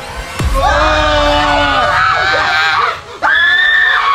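Several people screaming in fright: one long scream of mixed voices, then a second high, steady scream starting about three seconds in. A deep falling boom comes just before the first scream.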